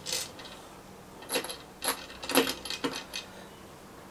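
Small metal parts clinking as shims and spacers are handled and slid onto a bolt: a scattering of light clicks spread through the moment.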